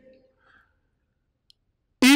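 Near silence: faint room tone, with one short, faint click about one and a half seconds in.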